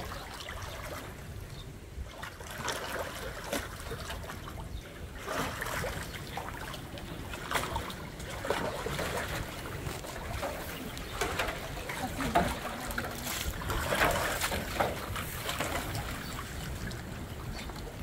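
Water in a metal stock tank sloshing and splashing irregularly as a tiger paws and wades in it.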